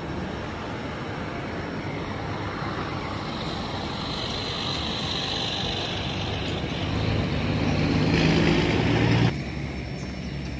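A large motor vehicle's engine grows louder over a steady background of traffic noise, then cuts off suddenly near the end.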